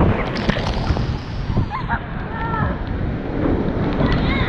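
Water rushing and splashing around an inflatable tube as it slides down a waterslide, a steady loud wash of noise, with a couple of short shrieks from the riders in the middle.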